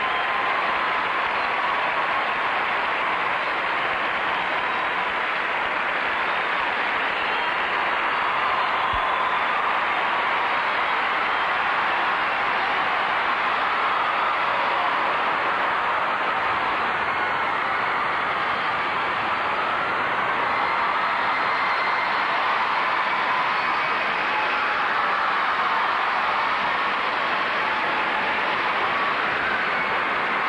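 A large arena crowd applauding and cheering, a steady dense wash of clapping that holds at the same level throughout.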